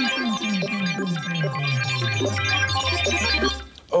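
Electronic synthesizer jingle: rapid high blipping notes over a bass line that slides steadily downward, stopping shortly before the end. It is the game show's cue as the letter grid is brought up on screen.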